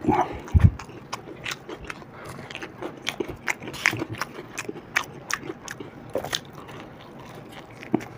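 Close-miked chewing and crunching of deep-fried mirchi pakoda, green chillies fried in gram-flour batter, heard as irregular crisp clicks throughout. There is a low thump just after the start.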